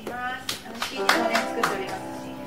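A few scattered handclaps from a small audience, about four in two seconds, over sustained notes from a grand piano, with a short voiced sound near the start.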